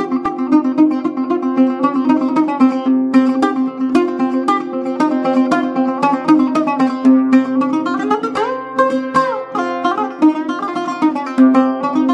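Solo oud playing a quick melody of many short plucked notes over a recurring low note. About two-thirds of the way through, a few notes slide up and back down along the fretless neck.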